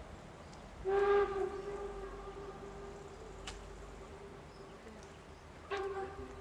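Steam whistle of HSB narrow-gauge locomotive 99 7232, a class 99.23–24 Neubau 2-10-2 tank engine, sounding one long blast of about four seconds that is loudest at its start. A second blast begins just before the end.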